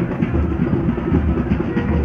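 Drums playing a fast, busy rhythm with deep bass thuds recurring through it.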